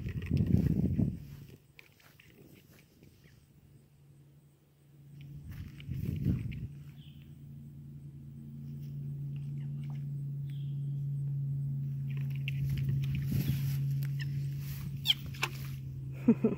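Frogs calling a few times, first about six seconds in and again later, over a steady low hum that sets in and slowly grows louder.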